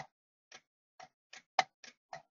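Small sharp clicks or taps, about seven in two seconds and unevenly spaced, the loudest about one and a half seconds in.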